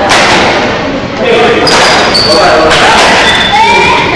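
Badminton play in a large, echoing sports hall: sharp knocks of rackets and feet on the wooden court a few times, with a few short high shoe squeaks, over players' and onlookers' voices.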